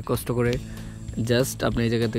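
Speech: a voice talking, with no other clear sound.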